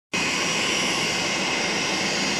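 Business jet's engines running steadily as the aircraft taxis, a rushing noise with a steady high whine over it.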